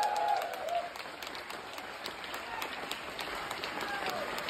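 Audience applauding in a live venue, with scattered claps, in a gap between loud band hits. The ringing of the preceding chord fades out within the first second.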